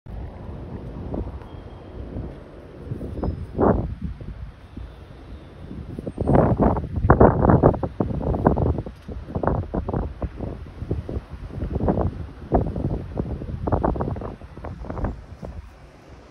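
Wind buffeting a phone microphone outdoors: a low rumble that swells in irregular gusts, strongest a few seconds in.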